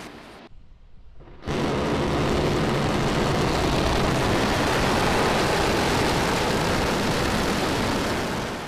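SpaceX Starship SN10 prototype exploding on its landing pad: a sudden blast about a second and a half in, then a steady, loud roar and rumble of the fireball that holds for several seconds.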